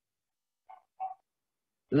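Near silence on a video-call line, broken by two short sounds about a third of a second apart, then a man's voice starts again just before the end.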